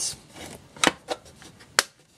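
Hard plastic case of an Irwin Unibit step drill set being shut by hand: a few sharp clicks as the lid closes and the latches snap, the sharpest near the end.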